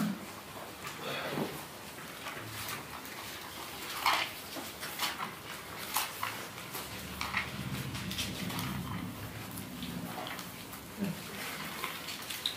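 Sheets of paper being handled and shuffled on a lectern: scattered soft rustles and small clicks in a quiet room. A faint, low, voice-like hum runs for a few seconds past the middle.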